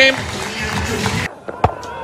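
Stadium crowd noise after a six, cut off abruptly a little over a second in; then a single sharp crack of a cricket bat striking the ball.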